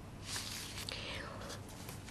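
A person's soft breath close to a desk microphone, a short hiss starting about a quarter second in and fading within a second, over a faint steady room hum.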